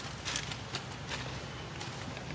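Macaques moving and feeding on dry leaf litter: soft rustling and a few scattered light crackles, over a low steady hum.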